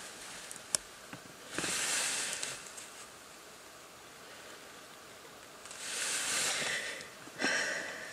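A person breathing out close to the microphone: two slow, audible breaths about four seconds apart, with a shorter breath near the end and a small click about a second in.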